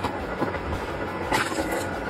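Electric-motor-driven crank log splitter running, its ram driving logs onto a steel wedge, with a knock about once a second over steady mechanical noise.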